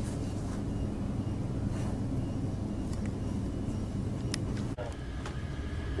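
Steady low hum of a laser hair removal machine's cooling fans running, with a few faint ticks and a brief break near the end.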